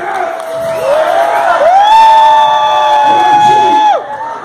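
A rock frontman's voice through the PA, calling out over a cheering crowd, then holding one long note for about two seconds that cuts off suddenly near the end.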